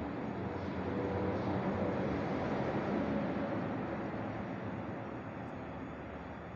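Steady hum and rushing noise of running machinery, swelling slightly about a second in, then easing off.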